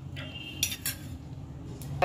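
Metal clinks against a steel kadai: two quick sharp clinks close together about two-thirds of a second in, and a lighter click near the end.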